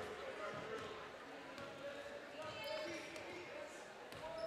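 A basketball being dribbled on a hardwood gym floor, the bounces faint, with faint voices in the hall behind.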